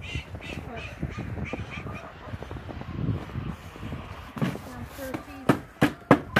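A bird calling in a quick series of short, harsh calls over the first two seconds. Near the end come two sharp knocks, the loudest sounds, as a plastic bucket is picked up.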